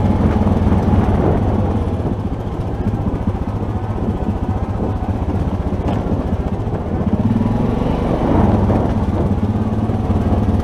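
ATV engine running as it is ridden along a rough dirt trail, easing off for a few seconds and picking up again about seven seconds in.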